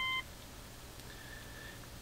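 Subaru Select Monitor (Hitachi diagnostic interface) key-press beep: a short electronic beep as the Enter key is pressed, cutting off just after the start, then a fainter, higher single tone about a second in.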